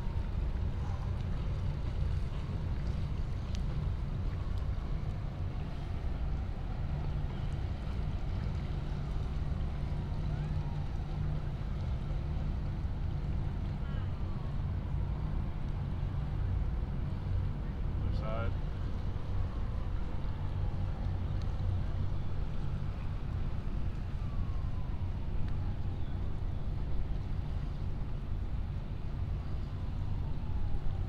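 Steady low outdoor rumble of wind on the microphone and distant motor noise from the water, with a faint falling whistle every few seconds.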